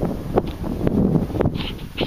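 Wind buffeting the microphone in an uneven low rumble, with a couple of light clicks.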